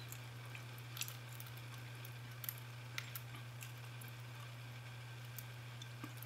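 Faint small metallic clicks of a Bogota pick working the pin stack of a TESA euro-profile pin-tumbler cylinder, a few clicks spread over the seconds, over a steady low hum.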